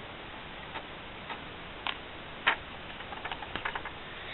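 Light, irregular clicks and ticks from a Perplexus Rookie maze sphere being turned in the hands, its ball knocking along the plastic tracks and railings. The sharpest click comes about two and a half seconds in, and a quick run of small ticks follows near the end.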